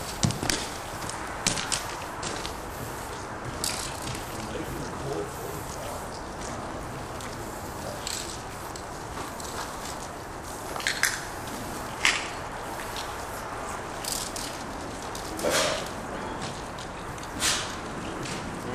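Aerosol spray-paint cans hissing in short bursts every few seconds over a steady outdoor background noise.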